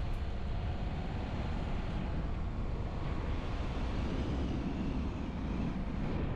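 Car driving along a road: a steady, low rumble of engine and tyre noise.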